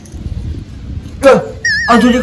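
A short yelp that falls in pitch about a second in, followed by a high, evenly wavering whistle-like tone, sound-effect style, near the end.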